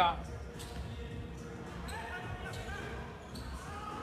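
A basketball being dribbled repeatedly on a hardwood gym floor, a steady run of bounces.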